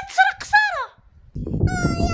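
A woman wailing in exaggerated sobs: two short high-pitched cries that fall in pitch, then, after a brief pause, one long held high wail.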